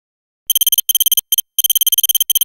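Electronic text-typing sound effect: a high-pitched beep pulsing rapidly, many times a second, in short runs with brief breaks, starting about half a second in.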